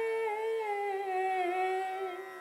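A woman's singing voice holding one long note of a devotional song, wavering and sliding lower about half a second in, then fading near the end.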